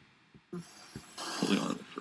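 Silence for about half a second, then a faint, muffled voice with a soft click just before it.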